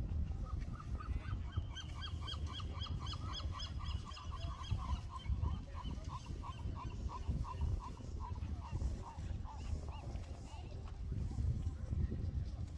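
A rapid run of short, pitched, honk-like notes, about four a second, slowing and fading toward the end. Under it is a steady low rumble.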